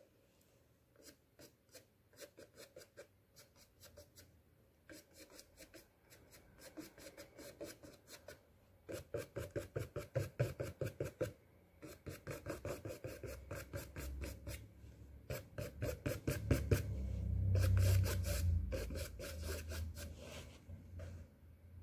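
A paintbrush scratching across a stretched canvas in runs of quick, short, choppy strokes, several a second, with brief pauses between runs. The strokes are dry and scratchy, laying in acrylic fur texture. A low rumble builds in the second half and is loudest a few seconds before the end.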